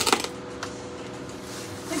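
A short rustling clatter of things being handled, then a single light tap about half a second later, over a faint steady hum.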